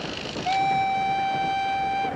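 A moving train's rumble, then about half a second in a train whistle sounds one long, steady, single-pitched note that lasts about a second and a half and is louder than the rumble.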